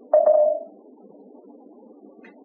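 A quick run of two or three knocks with a short ringing tone that dies away within about half a second, near the start.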